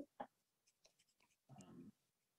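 Near silence: room tone, with the tail of a word at the start and a short, faint noise shortly before the end.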